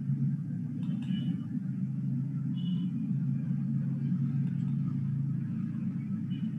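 Steady low rumble of background noise coming through an online call's open microphone, with two faint short high chirps about one and three seconds in.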